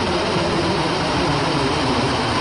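Loud heavy rock music dominated by distorted electric guitar.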